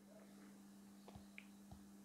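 Near silence: room tone with a faint steady hum and a few faint short ticks from a fingertip tapping and swiping on a phone's glass screen.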